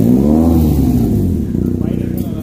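A motor vehicle engine, running steadily, revs once: its pitch rises and falls back over about a second and a half, then settles.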